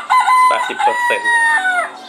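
A recorded rooster crow played by a tablet alphabet game through the tablet's small speaker, as the reward when a traced letter is scored. It is one long call that holds steady and then drops in pitch near the end, with short clucks under it.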